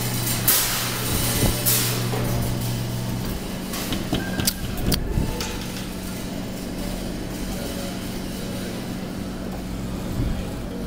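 Claw machine running: a steady motor hum that stops about three seconds in, with a few clicks and knocks over a constant lower hum.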